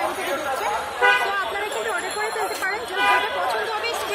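Street chatter of voices, with a vehicle horn honking twice: about a second in and again about a second before the end.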